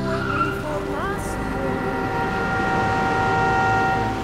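A car braking hard to a stop in a road tunnel, its tyres squealing: the squeal rises in pitch about a second in, then holds steady and grows louder toward the end.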